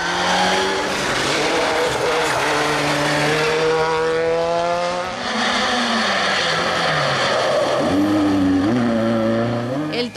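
Rally car engines at full throttle passing on a stage. The revs climb through the gears, drop sharply about halfway through, and another car revs up hard near the end.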